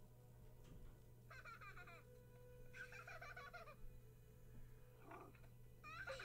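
Near silence with a low hum, broken twice by faint, high, wavering squeals: once about a second in and again about three seconds in. They are the cartoon clip's audio starting to play quietly.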